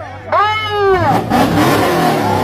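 Dodge Charger Scat Pack's 6.4-litre HEMI V8 revved: one rev rising and falling about half a second in, followed by a broad rush of noise as it runs on, amid crowd voices.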